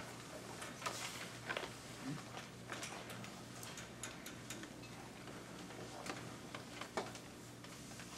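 Quiet room tone: a steady low hum with scattered, irregular small clicks and rustles from the people in the room, heard during a silent pause for marking ballots.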